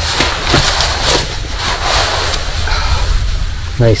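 Ultralight monofilament hammock fabric rustling in irregular bursts as a person shifts across it, over a steady low rumble of wind on the microphone.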